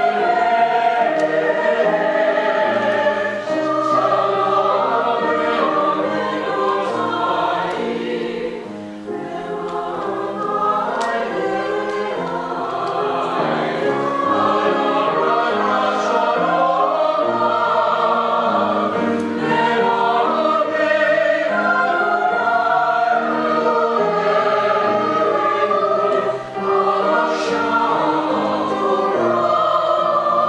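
Mixed choir of men's and women's voices singing in harmony, the phrases held and moving chord to chord, with a brief break near the end.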